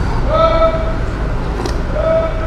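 A man humming a long closed-mouth "mmm" of enjoyment while eating, held for under a second, over a steady low background rumble.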